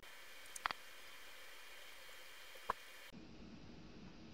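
Quiet room tone with a faint hiss and a few soft clicks: two close together about half a second in and a single one near three seconds.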